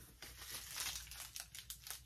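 Packaging on a new handbag crinkling as it is handled, an irregular crackling rustle.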